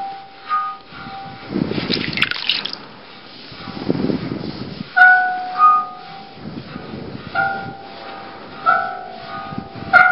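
Brass water gong (a Chinese spouting bowl filled with water) stroked with wet hands. A held ringing tone fades in the first second, followed by rubbing and swishing. From about halfway through it sings again in a run of short ringing tones, often two notes at once, with rubbing between strokes.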